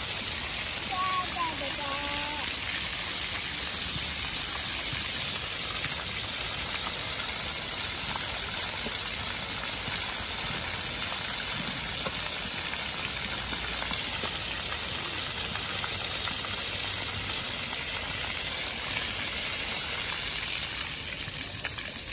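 Steady rushing and splashing of water pouring from a splash-pad fountain feature, a stream spilling onto wet ground. The sound goes on unbroken at an even level.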